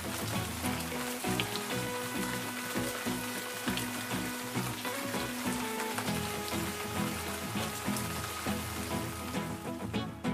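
Steady rain falling, with background music playing over it.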